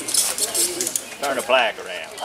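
Crowd voices talking over one another, with one voice rising louder about one and a half seconds in.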